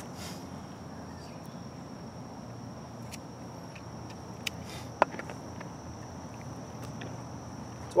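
Outdoor field ambience: a steady high-pitched insect drone over a faint low rumble, with two small sharp clicks about halfway through.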